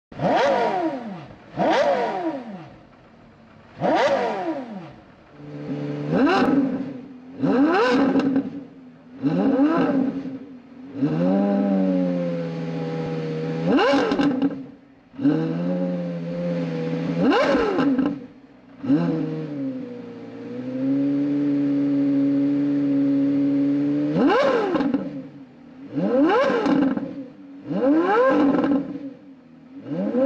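Porsche Carrera GT's V10 engine revved in about a dozen quick blips, each a sharp rise in pitch that falls back to idle within about a second. Through the middle it idles steadily for several seconds, broken by a couple of blips.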